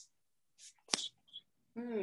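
Pump bottle of makeup setting spray spritzing: a faint short hiss, then a sharper spritz about a second in. Speech resumes near the end.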